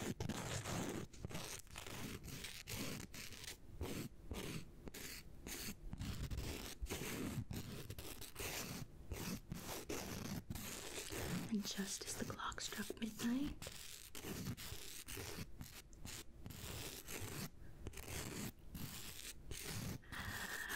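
Nail file rasping across fingernails in repeated short back-and-forth strokes, a scratchy sound broken by brief pauses between strokes.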